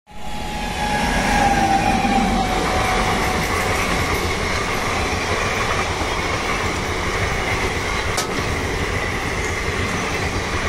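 Indian Railways electric passenger train passing close by: the locomotive goes past, then a long rake of coaches, with a steady rumble of wheels on rail. A tone drops slightly in pitch over the first three seconds as the locomotive passes.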